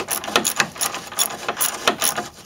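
Irregular metallic clicks and ticks, several a second, from a wrench worked back and forth on a seized, rusted stabilizer bar link bolt as penetrating oil is sprayed onto it to free it.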